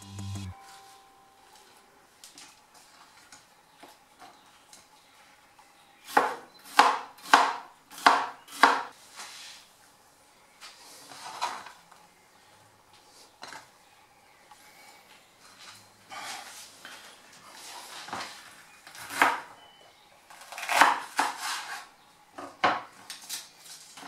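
A kitchen knife cutting green peppers on a bamboo cutting board: a quick run of sharp knocks about six seconds in, scattered lighter knocks and clinks after that, and another run of knocks near the end.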